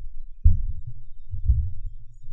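Two dull, low thumps about a second apart, with a faint low rumble between them.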